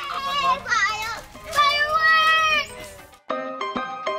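Children's voices calling out excitedly, high and sliding in pitch, for about three seconds. After a brief gap near the end, music with short, clipped notes starts suddenly.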